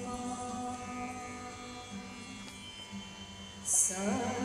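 Live Indian devotional music: long held notes, sung or hummed in a chant-like style, with the pitch shifting about two seconds in. A short bright high-pitched burst near the end is the loudest moment.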